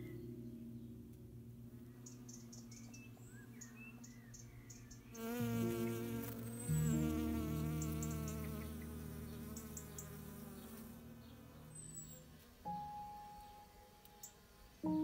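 Honeybee buzzing close by as it forages on flowers: a wavering hum that comes in about five seconds in and fades out about eleven seconds in. Under it are soft, sustained low notes of ambient music.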